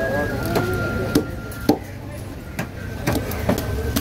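Fish knife knocking against a wooden chopping block as a whole fish is cut, about seven sharp knocks at uneven intervals over a steady low background rumble.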